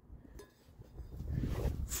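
Faint handling noise: a low rumble with light rustling and ticks that builds in the second half as the phone camera is moved.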